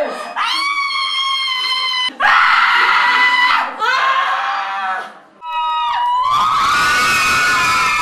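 Women screaming in a string of separate high-pitched shrieks, ending in a long one from about six seconds in where several voices scream together.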